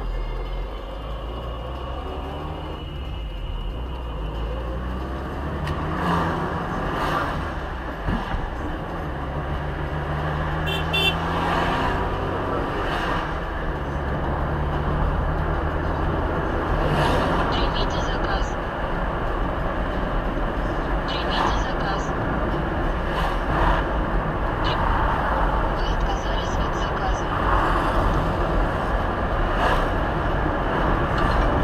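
Engine and road noise heard from inside a car as it pulls away from almost a standstill and speeds up to about 70 km/h. It grows gradually louder as the speed rises.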